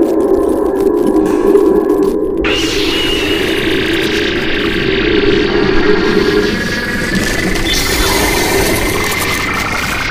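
Electronic time-machine sound effect: a steady low hum, joined about two and a half seconds in by a rushing hiss, and a whine that rises steadily in pitch over the last couple of seconds.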